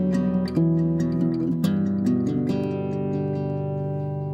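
Background music: acoustic guitar picking and strumming chords, with notes ringing on and one chord held near the end.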